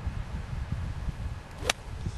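A golf club striking a ball, one sharp crack near the end: a clean, well-struck shot.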